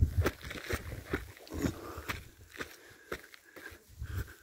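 Footsteps scuffing and crunching on a granite rock slab with loose grit, about two steps a second, as a hiker climbs.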